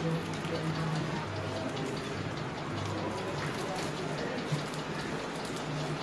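Continuous crackling patter, like rain, with a low hum in patches and a man's voice faintly at the microphone.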